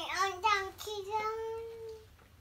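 A toddler's high voice singing in a sing-song way: a few short wavering notes, then one long held note that rises slightly.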